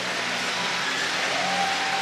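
Arena crowd applauding steadily.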